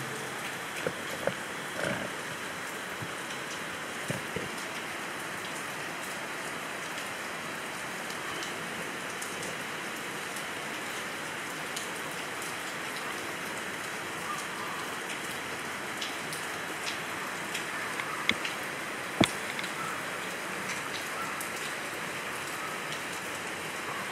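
Steady rain falling, an even hiss with a few sharp drop taps scattered through it, the loudest about 19 seconds in.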